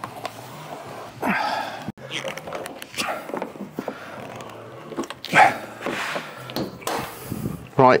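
Indistinct, murmured talk in short snatches over a steady low hum.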